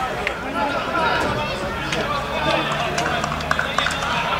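Players' voices on the pitch shouting and calling out, overlapping and indistinct, with a few short sharp knocks after about three and a half seconds.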